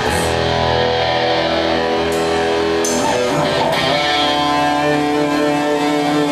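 Electric guitar played live through an amplifier: ringing chords held out, moving to a new chord about halfway through.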